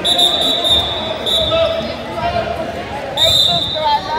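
A basketball bouncing on a hard court, with voices in the background. A high, steady squeal sounds for about a second at the start and again briefly near the end.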